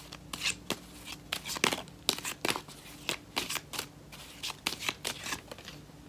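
A tarot card deck being shuffled overhand, the cards slapping and sliding against each other in quick, irregular strokes.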